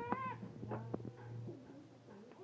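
A short, high-pitched, meow-like cry that bends in pitch right at the start, then a fainter, shorter one near the middle, over a low steady hum that stops about three quarters of the way through.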